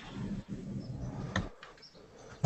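Faint background noise on an open video-call line, with a couple of small clicks about a second and a half in.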